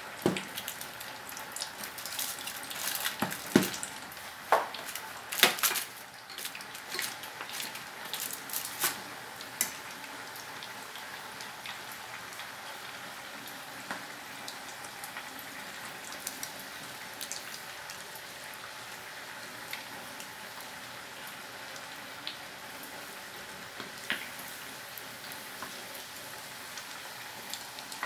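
Pork belly pieces deep-frying in hot oil in a stainless steel pot, frying until golden and crisp for torresmo. A steady sizzle runs throughout, with frequent sharp crackling pops in roughly the first ten seconds and only the odd pop after that.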